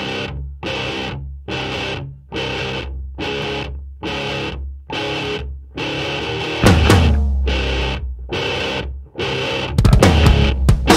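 Heavily distorted electric guitar chords struck in a repeated stop-start pattern, a bit more than one a second with short gaps between. A louder hit lands about two-thirds of the way through, and a denser full-band sound comes in right at the end.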